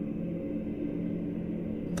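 Anime background score: a low, steady drone of several held tones.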